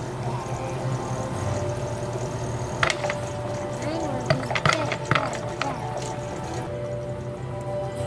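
Background music with steady held tones, with a few sharp clacks of large wooden blocks knocking together as they are pushed in a stacked tower, once about three seconds in and several more between about four and five and a half seconds.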